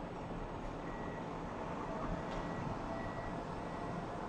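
Steady outdoor hum of distant road traffic heard from high up, with a faint high beep coming and going, like a vehicle's reversing alarm.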